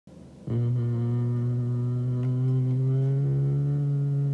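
A low droning note, held steady on one pitch, starts abruptly about half a second in.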